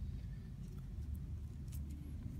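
Low steady room hum with a few faint, brief rustles of paper as a paper cover's edges are pressed and folded down over board by hand.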